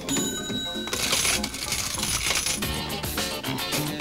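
Cash-register and clinking-coin sound effects over music, with a bright jingling burst about a second in, then settling into a regular rhythmic loop as a plucked riff comes in.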